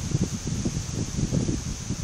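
Low, irregular rumbling of wind and handling noise on a phone microphone, under a steady high hiss.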